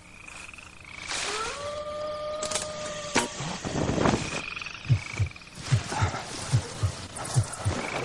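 Night-forest sound effects: a high trilling night call comes twice, and a long animal cry rises and then holds steady for about two seconds, among a few sharp snaps. About five seconds in, a low pounding heartbeat begins, in lub-dub pairs.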